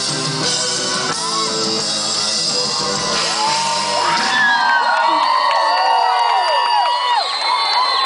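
Live reggae band music heard from within the audience. About halfway through the band drops away and the crowd carries on with loud whooping, shouting and singing from many voices.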